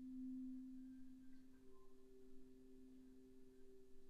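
Bass flute with live electronics sounding very soft, pure held low tones: one sustained note swells near the start, and a second, higher held note joins about one and a half seconds in, the two sounding together.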